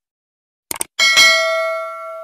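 Sound effects for a subscribe-button animation. A quick double mouse click comes first. Then a notification bell dings twice in quick succession and rings out, fading slowly.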